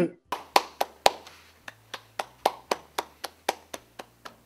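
A few people clapping: uneven separate hand claps, loudest in the first second, then softer and more spread out.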